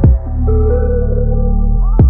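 Hip-hop instrumental beat: a kick drum with a long deep 808 bass note at the start and again near the end, under a held synth melody.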